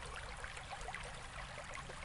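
Running water, a steady trickling with many small splashes.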